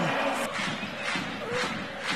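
Football stadium crowd noise, an even haze of many voices that fades slightly.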